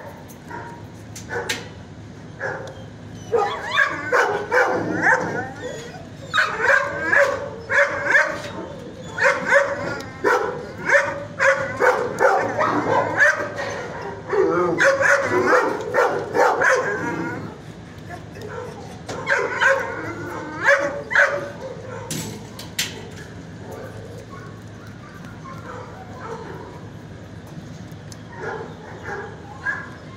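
Dogs barking and yipping in a shelter kennel: a dense run of barks from about three seconds in until about twenty-two seconds, then only occasional quieter barks.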